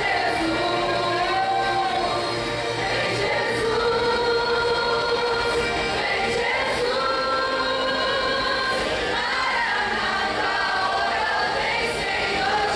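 Church choir singing a gospel hymn in long held notes, the women's voices carried on handheld microphones.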